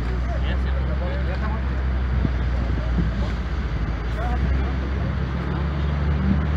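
A vehicle engine idling steadily under the talk of several people nearby, who are not clearly understood.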